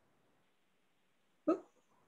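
Near silence, broken about one and a half seconds in by a single short vocal sound from a woman, a brief hiccup-like catch of the voice.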